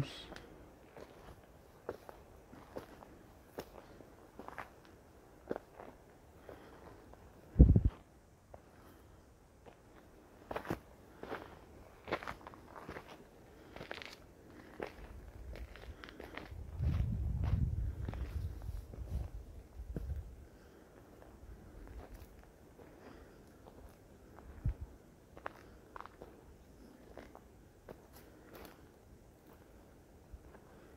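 Footsteps of a person walking on a dry dirt trail strewn with pine needles and small stones: irregular crunching steps. There is one loud low thump about eight seconds in, and a low rumble on the microphone for a few seconds around the middle.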